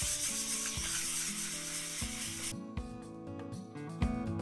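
A hand-held pad rubbed over the shellac French-polished wooden body of a bass guitar, giving a steady scrubbing hiss that stops about two and a half seconds in. Soft guitar background music plays underneath.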